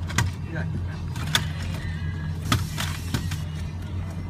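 Boat engine running steadily at trolling speed, a low drone, with four sharp knocks spread through it.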